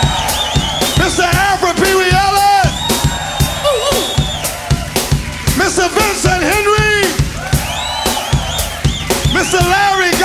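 Live funk band playing a groove with a horn section and drums, the bass guitar removed from the mix, with shouts from the band and crowd over it.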